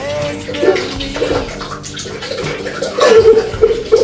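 Adult man bawling: drawn-out, wavering sobbing wails, loudest about three seconds in, echoing off the tiled bathroom walls.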